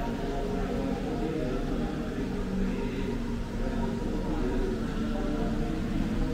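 Buddhist chanting, a voice holding long, drawn-out tones that shift only slowly in pitch.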